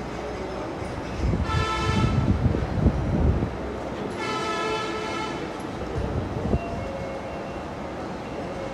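Two long, steady-pitched horn blasts, the first about a second and a half in and the second, longer one about four seconds in, over a steady background din.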